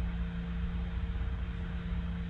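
Steady low electrical hum with faint background hiss: the room tone of a voice recording.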